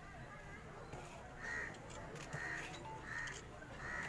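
A bird calling four times in an even series, short calls a little under a second apart, over faint background voices.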